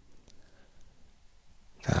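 Quiet background with a faint low hum and a couple of faint clicks, then a voice saying "Tak" near the end.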